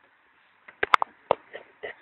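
Several sharp clicks of small plastic parts in a Panasonic home telephone's button housing being handled by hand, a quick cluster of about four a little under a second in, then a few fainter ticks.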